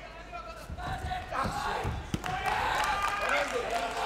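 Taekwondo sparring: several dull thuds of feet and kicks landing between about one and two seconds in, under shouting voices from coaches and crowd, with a call of "come on" at the very end.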